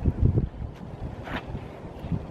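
Wind blowing across the camera microphone at the shoreline, a steady low rumble, with a louder low buffeting in the first half second and a brief faint higher sound around the middle.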